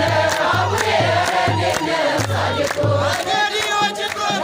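A crowd singing an Ethiopian Orthodox mezmur, a hymn to Mary, together, with hand clapping and a low pulsing beat. A high wavering voice rises above the singing near the end.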